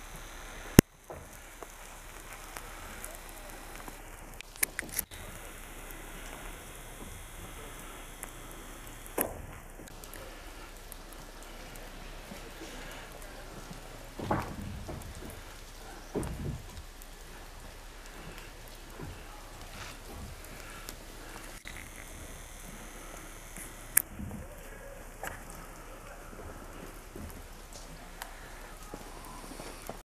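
Outdoor ambience in falling wet snow: a steady rain-like hiss with scattered light clicks and knocks, and two short louder rushes about 14 and 16 seconds in.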